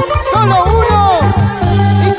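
Instrumental passage of a Peruvian dance song: a bass line bouncing in short repeated notes under a lead melody that slides and bends in pitch.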